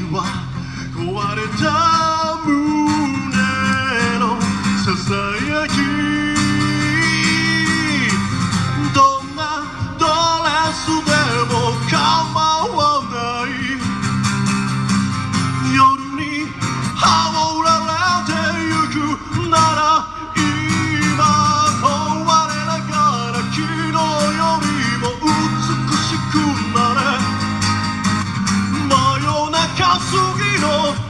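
Live song: a vocalist singing into a microphone, accompanied by acoustic guitar, both amplified through PA speakers.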